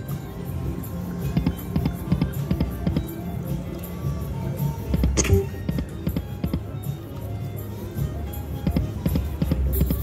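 Light & Wonder Lock It Link Eureka Treasure Train slot machine playing its game music and reel-spin sounds over about three spins, with many short clicks. A sharp hit comes about five seconds in.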